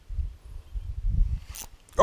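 Low, uneven rumbling noise on the microphone, with a short hiss about one and a half seconds in.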